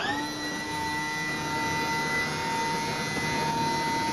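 A steady mechanical whine over a hiss, plausibly the hydraulic pump of the lift rig that tips a stunt car. It rises quickly in pitch at the start, then holds level.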